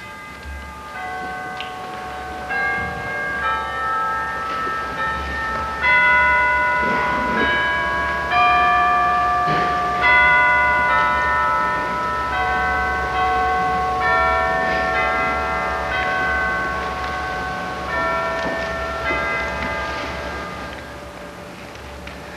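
Bell-like chimes playing a slow hymn tune in chords, each note ringing on and overlapping the next, fading toward the end.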